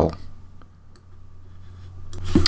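Two faint computer mouse clicks over a low steady hum.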